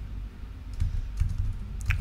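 Computer keyboard keys tapped in a quick run of clicks starting about a second in, moving the cursor between crossword clues.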